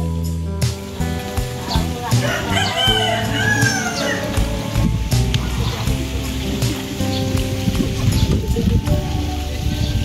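A rooster crowing, with a call about two to four seconds in, over steady background music.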